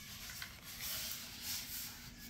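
Faint rubbing and rustling of a foam model-airplane fuselage sliding against its styrofoam packing tray as it is lifted out.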